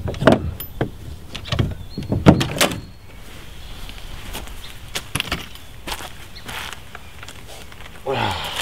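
Clicks and knocks from a kayak's metal-framed seat being unclipped and lifted out of the hull, the loudest knock a little over two seconds in. Then a few scattered lighter knocks as the seat is carried away.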